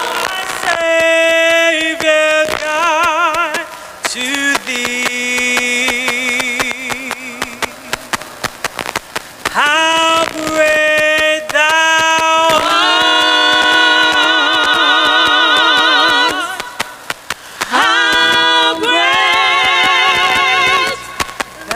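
A choir singing a cappella: long held notes with wide vibrato, in a few phrases separated by short breaths.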